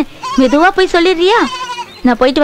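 Film dialogue: a voice speaking, with a fast quavering wobble in its pitch near the end.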